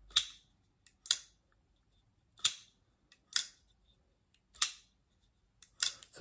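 Winter Blade Co Severn folding knife being worked open and shut by hand. Its blade clicks sharply six times, roughly once a second at uneven intervals.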